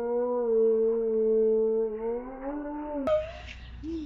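A woman's long, drawn-out cry of disgust, held on one pitch and rising slightly at the end, after biting into an Oreo filled with toothpaste. It cuts off suddenly about three seconds in.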